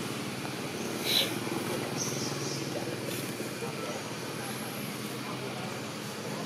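Indistinct voices in the background over a steady low rumble, with one brief sharp high-pitched sound about a second in.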